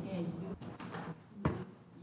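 A faint voice trailing off at the start, then a single sharp knock about one and a half seconds in, against quiet room sound.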